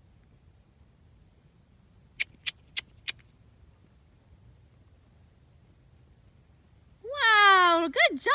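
Four sharp tongue clicks, about three a second: a rider's or instructor's cluck that urges a horse forward. Near the end, a voice calls out loudly with a long, sliding pitch.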